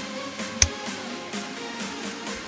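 Background electronic music playing under the scene, with one sharp snip about half a second in from pruning shears cutting through a pitahaya stem.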